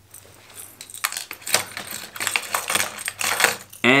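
Fishing lures and their metal hooks clicking and clinking against each other and a plastic tackle box as they are handled and picked out. The clicks are irregular and come in quick clusters.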